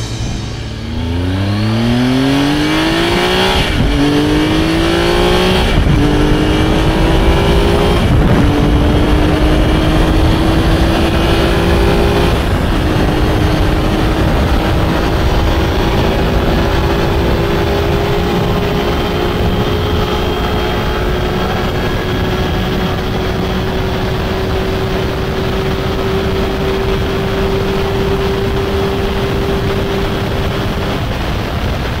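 Motorcycle engine accelerating hard through the gears. Its pitch climbs and drops back at four upshifts in the first dozen seconds, then rises slowly in one long pull in top gear, with steady wind rush at high speed.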